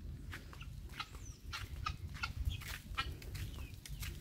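Chickens clucking in short, irregular calls, with one high bird chirp about a second in, over a steady low rumble.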